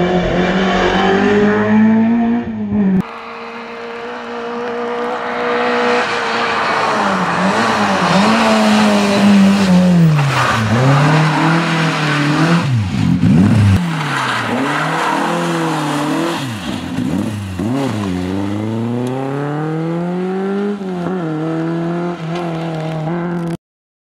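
Rally car engine revving hard on a tarmac stage, its pitch climbing and falling again and again through gear changes and lifts off the throttle. The sound drops and changes about three seconds in, and cuts off suddenly near the end.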